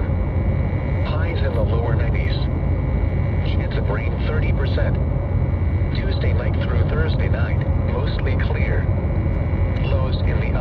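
NOAA Weather Radio broadcast voice heard through a receiver, partly buried under a steady loud low rumble and static hiss from poor reception. The computer-synthesized voice comes through in short, indistinct stretches.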